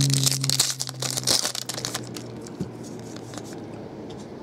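Foil trading-card pack wrapper crinkling as it is handled, densest in the first second and a half, then fainter rustling and clicks as cards are slid out.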